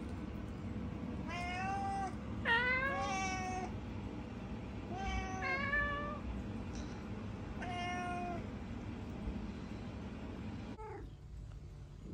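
Domestic cats meowing repeatedly, about six meows over the first eight seconds, a couple of them overlapping as if from more than one cat.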